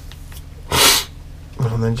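A man sneezes once, a short sharp burst about a second in.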